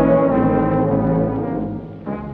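Slowed-down, reverb-heavy old dance-band record: the brass section holds sustained chords that die away near the end.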